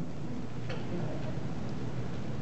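A pause in speech: room tone through a handheld microphone with a steady low hum, and two faint ticks about a second apart.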